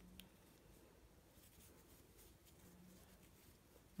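Near silence, with faint soft rustling and light ticks of a crochet hook working doubled yarn.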